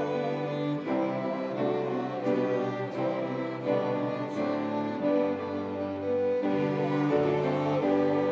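Student string ensemble of violins and cellos playing a slow piece in held, bowed chords that change about once a second.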